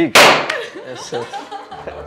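A confetti popper going off once: a sharp pop followed by a short rush of noise as it dies away, with voices after it.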